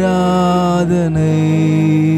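A man singing a long, held note in a Tamil Christian worship song, with music underneath. About a second in, the note slides down to a lower pitch and is held there.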